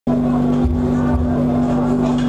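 Live taarab band music: a steady held keyboard note with two low beats about half a second apart.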